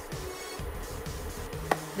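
Soft background music, with a single sharp click near the end.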